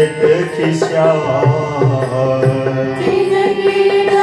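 Indian devotional singing of sacred verses, a voice carrying a wavering melody over the steady held chords of a harmonium, with regular strokes of a barrel drum underneath.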